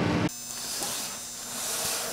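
Loud, steady running of the mask-recycling machinery as shredded surgical-mask polypropylene falls into a bin. It cuts off abruptly about a third of a second in, leaving a much quieter hiss with faint light rustles.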